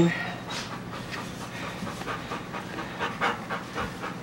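A Wirehaired Pointing Griffon puppy panting quickly in short, closely spaced breaths while it works a bird wing.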